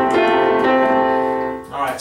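Casio Privia digital piano playing held chords, with new notes struck twice, then fading out shortly before the end.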